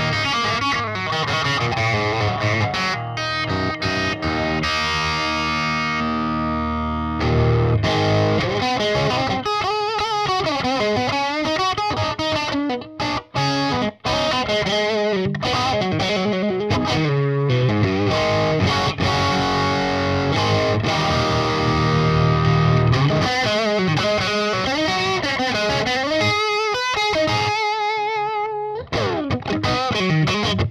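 Distorted electric guitar: a Fender Nashville Telecaster with DiMarzio humbuckers, played through a Splawn Quick Rod 100-watt tube head and 2x12 cabinet on its first gain setting, a classic-rock level of distortion. The bridge and neck pickups are pulled into parallel mode, giving a thinner sound, more like a traditional Telecaster. He plays chords and riffs, holding one chord from about 4 to 7 seconds, with brief breaks near 13 seconds and shortly before the end.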